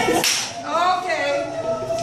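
A single short, sharp smack-like snap about a quarter second in, followed by a high voice rising and falling, over the murmur of people in the room.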